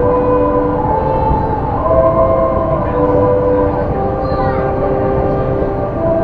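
Disney Resort Line monorail running with a steady low rumble, under background music playing a slow tune of held notes.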